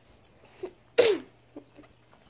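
A boy sneezing once, about halfway through: a sharp burst with a short falling vocal tail. He has a snotty nose.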